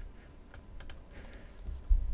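A few scattered, light clicks from computer keys and mouse buttons.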